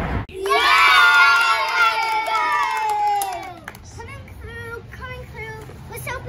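A group of children cheering and shouting together, many voices at once, for about three seconds. The voices slide down in pitch as the cheer dies away, and one quieter voice talks near the end.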